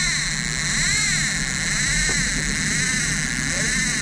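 Boat motor running steadily while under way, with a whine that rises and falls about once a second over the engine's steady hum.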